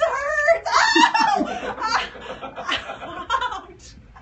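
Laughter: a woman laughing in short bursts as she steps barefoot onto loose Lego bricks, loudest in the first two seconds.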